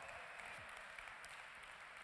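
Faint audience applause, fading slightly.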